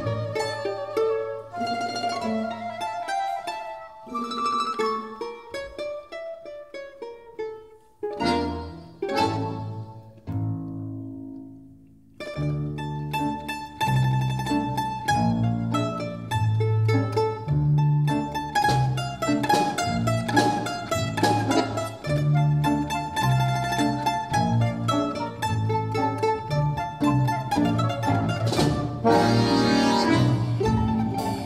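Domra solo with a Russian folk-instrument orchestra. For the first twelve seconds or so the music is sparse and quieter, with a short pause and a falling phrase that fades away; then the full orchestra comes in louder with a steady beat and a strong bass line.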